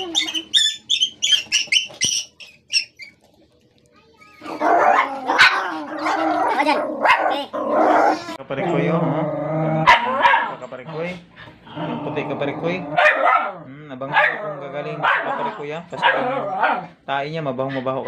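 Dogs barking and growling, with people's voices mixed in.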